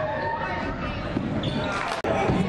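A basketball bouncing on a gym's hardwood floor, a few short knocks, over the voices of players and spectators.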